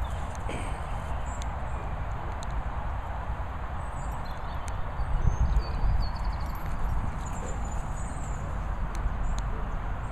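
Wind rumbling on the microphone, uneven and low, with a few faint high chirps.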